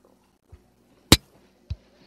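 Three short, sudden clicks over a faint low background: a dull thump about half a second in, a loud sharp click about a second in, and a lighter click near the end.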